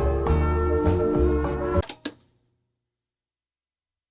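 Instrumental music with steady bass notes played back from a reel-to-reel tape deck. It cuts off abruptly about two seconds in with a click, leaving silence.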